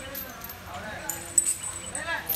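Voices of people talking in the background, with a sharp click about one and a half seconds in.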